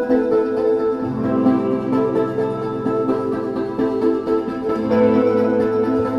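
Live progressive rock band playing an instrumental passage: held chords over a bass line, with the low bass notes coming in about a second in and again near the end.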